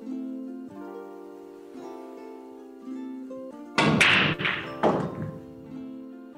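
Guitar music playing throughout, with a pool break shot about four seconds in: a loud crack as the cue ball drives into the racked balls and they clack apart. A second, smaller clack of balls follows about a second later.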